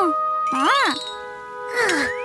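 Light cartoon background music with held chiming notes, under a cartoon character's wordless voice that rises and falls twice, followed near the end by a falling swoop.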